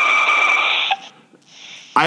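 A man's long, breathy sigh lasting about a second, then a brief quiet.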